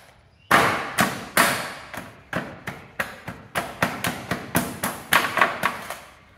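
Dry clay being pounded in a metal tray with a small metal tool: a steady run of sharp strikes, about three a second.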